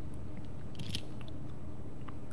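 Steady low room hum with a brief cluster of small clicks and crackles about a second in.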